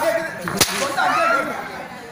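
One sharp smack, a slap or strike dealt in a comic stage beating, a little over half a second in, with a man's voice before and after it.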